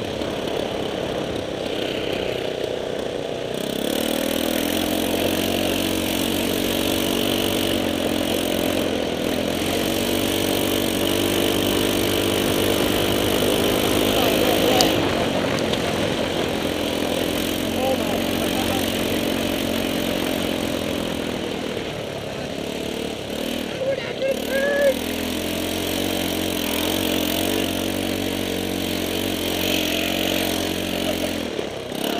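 A 150cc go-kart engine running steadily under throttle while the kart is driven. It eases off about two-thirds of the way through, then picks up again.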